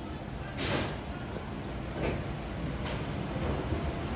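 Roller coaster train rolling out of the station with a low, steady rumble. A short, sharp hiss comes about half a second in, and two softer ones follow later.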